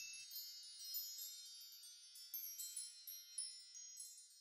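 Faint, high-pitched twinkling chime sound effect, many small shimmering tones ringing on and slowly fading away: the tail of a magical sparkle intro sting.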